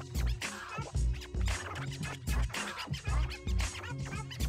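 DJ mix: a beat with a steady kick drum, with short scratching chirps cut over it in the first half and again near the end.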